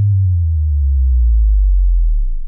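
Power-down sound effect: a low, nearly pure tone that slides slowly and steadily downward in pitch as the power cuts out.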